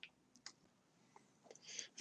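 Near silence in a pause between spoken sentences, with a few faint, short clicks and a faint breath near the end.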